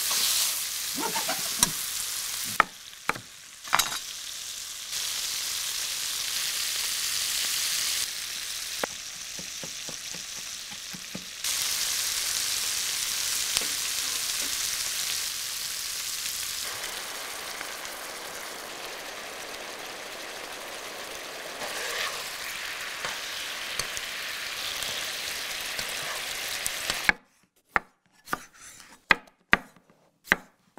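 Chicken-breast pieces sizzling as they fry in a hot pan, the sizzle stepping louder and softer several times. Near the end the sizzle cuts off and a knife chops a few separate strokes through a yellow bell pepper onto a wooden cutting board.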